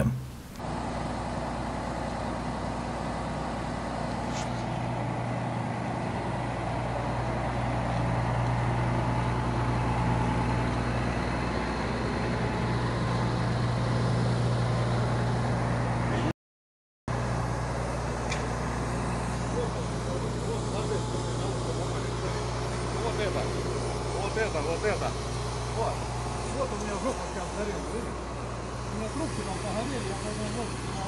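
A vehicle engine running steadily with a low hum, joined by faint voices in the second half. The sound drops out completely for about half a second, halfway through.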